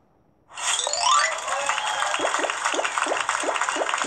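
Tablet game's celebration jingle, the sign of a puzzle solved: it starts suddenly about half a second in with a quick rising sweep, then bright chiming notes over a run of short falling blips, about three a second.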